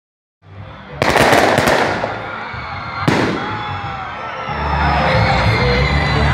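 Fireworks going off: a sudden burst of rapid crackling pops about a second in, then a single loud bang about two seconds later.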